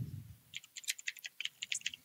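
Computer keyboard being typed on: a quick run of light key clicks, about ten a second, starting about half a second in.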